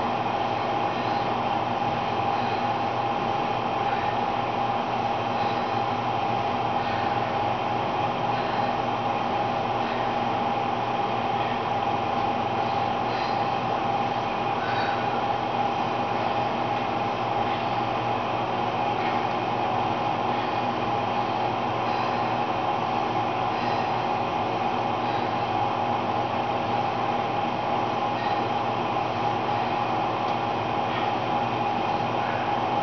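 Elliptical trainer in use: a steady mechanical whirring hum of the flywheel and drive, even throughout, with a few faint ticks.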